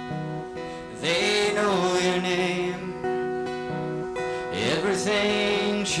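A live acoustic guitar being strummed while a man sings long held notes.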